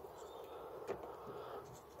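Faint handling sounds of a wiring loom being worked through a car door's inner panel, light rubbing of cable and plastic, with one small click about a second in.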